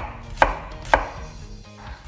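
Kitchen knife chopping an onion on a cutting board: three sharp knocks of the blade on the board within the first second, then quieter.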